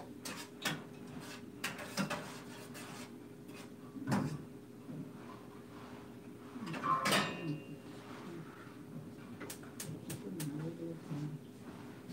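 Kitchen clatter: scattered light knocks and clinks of a cooking utensil, pots and dishes, the loudest about four and seven seconds in, over a steady low hum.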